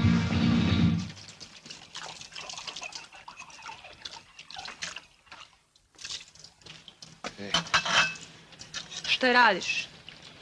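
Dance-hall music cuts off about a second in; then water runs from an outdoor tap in a thin trickle, with small splashes and drips. A short voice sound falls in pitch near the end.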